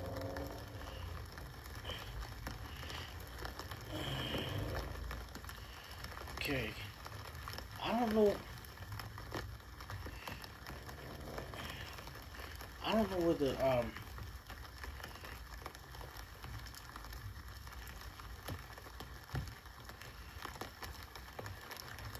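Steady patter of rain on a street, played from a livestream, with short bursts of voices now and then, the clearest at about 8 and 13 seconds in.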